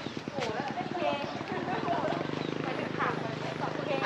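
Indistinct voices of people talking, with a rapid, steady low pulsing underneath.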